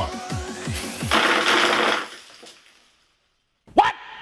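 Video-game soundtrack music with a steady beat and a rising sweep, then about a second of loud rattling clatter from the LEGO weight dropping down the spring-loaded tower's brick guide. The music stops dead after the clatter.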